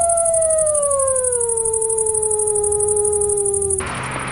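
A single long howl that holds its pitch, then slowly slides down and cuts off abruptly near the end.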